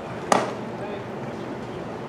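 A single sharp crack about a third of a second in as a pitched baseball arrives at home plate, hitting the catcher's mitt or the bat.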